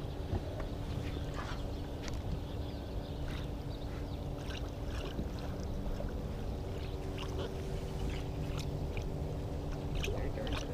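Steady low hum from the fishing boat, with faint scattered ticks and small water sounds while a hooked musky is played beside the boat on a baitcasting rod.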